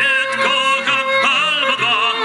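Operatic tenor singing with a wide vibrato, accompanied by a string quartet whose violins hold sustained notes beneath the voice.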